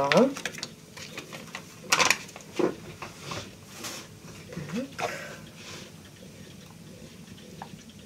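Light clatter and rustling of things being handled on a kitchen counter and wiped with a cloth: a few scattered soft knocks over the first five seconds, then it goes quieter.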